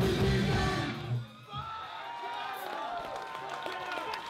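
Hardcore punk band playing live with distorted guitars, bass and drums, the song stopping abruptly about a second in. After that come crowd shouts and voices with a held guitar tone under them.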